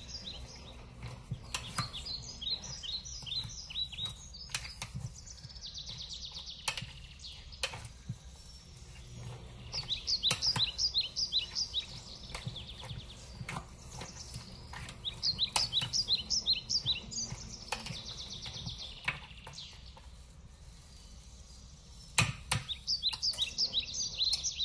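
A bird singing: repeated phrases of quick, high chirps, one every few seconds, over light clicks and scrapes of a spatula stirring in a steel bowl.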